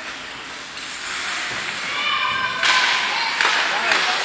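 Ice hockey rink during play: a hum of spectators' voices with a high shout about halfway through, then a loud hissing scrape, and two sharp knocks near the end.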